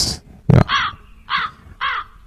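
A bird cawing three times in a row, each harsh call about half a second to three quarters of a second after the last.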